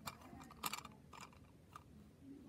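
Toy cat figures being handled and moved on a cloth: a few light clicks and rustles, the sharpest a little over half a second in.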